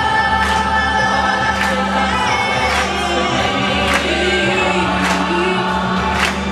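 Large mixed choir singing long held notes over a backing track with a steady beat.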